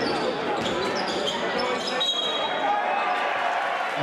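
Live basketball game sound in a large sports hall: crowd noise and voices, with ball bounces and short high squeaks of sneakers on the court.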